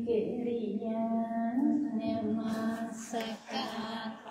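Women's voices chanting Buddhist verses through a microphone, in long notes held on a nearly steady pitch with a small rise in the middle.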